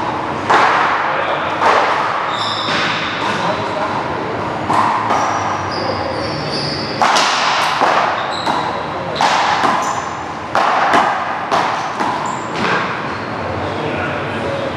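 A paddleball rally: sharp smacks of paddles striking a hard ball and of the ball hitting the wall and floor, about ten hits ringing in a large hall, with short high squeaks from sneakers on the court floor.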